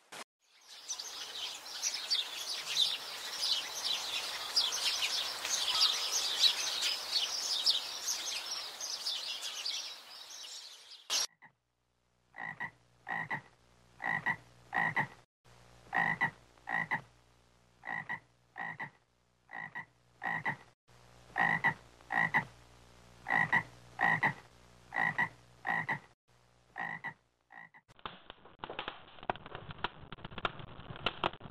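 A dense chorus of high chirping calls for about the first ten seconds, then a frog croaking over and over, one short call roughly every second, each call holding a lower and a higher note together, until near the end.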